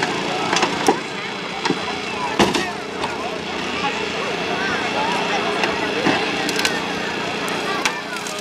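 A hydraulic rescue tool and its power unit running with a steady hum while cutting into a car body, with several sharp cracks and snaps of metal and glass giving way, over crowd chatter.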